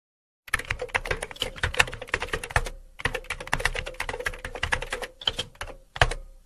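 Rapid computer-keyboard typing clicks, a typing sound effect for on-screen text, in two runs of about two and three seconds with a short pause between.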